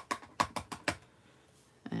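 Clear photopolymer wreath stamp on an acrylic block tapped repeatedly onto an ink pad to ink it: a quick run of about seven light taps in the first second.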